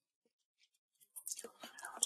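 Near silence for about a second, then faint breathing and soft mouth sounds from a person about to speak.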